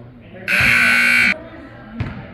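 Gymnasium scoreboard horn sounding once, a steady buzzing blast a little under a second long.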